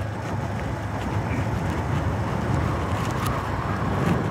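A small two-wheeler engine running steadily while riding along a road, with wind rushing over the microphone.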